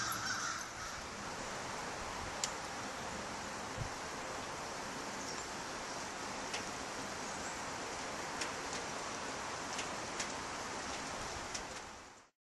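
Steady outdoor background noise with a bird call near the start and a few faint clicks scattered through it.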